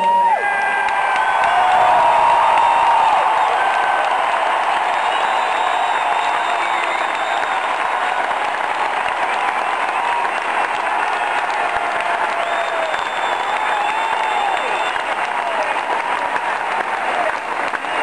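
Large ballpark crowd applauding steadily and at length, with scattered voices and cheers in it.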